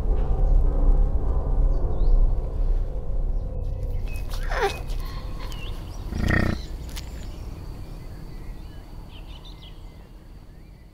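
Music with a sustained drone fades out, then a falling whistle-like call comes at about four and a half seconds and a short low call from a water buffalo about six seconds in, over a faint steady high tone.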